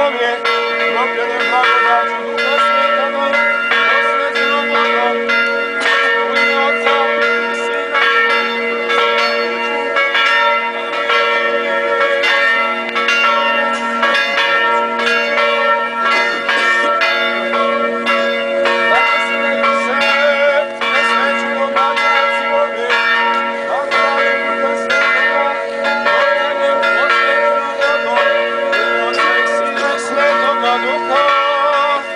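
Church bells ringing continuously in rapid, closely spaced strokes, the tones ringing on between strikes.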